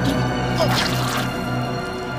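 Dramatic cartoon score with a low, steady drone, over which wet dripping sound effects are heard.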